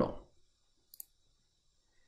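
A single computer mouse button click about a second in, with near silence around it.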